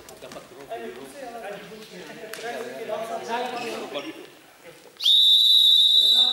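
Basketball referee's whistle blown in one long, steady, loud blast about five seconds in, after a few seconds of voices chattering in the gym; the whistle restarts play after the stoppage.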